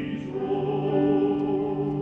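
Classical recording of an operatic tenor with orchestral accompaniment, sustained notes held with vibrato.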